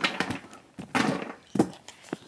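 A cardboard product box being handled and bumped: a few short knocks and scuffs.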